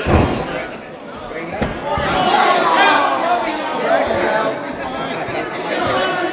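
A heavy thud as a wrestler crashes into an opponent in the ring corner, with a second, smaller thud about a second and a half later. Crowd voices shout and chatter from about two seconds in.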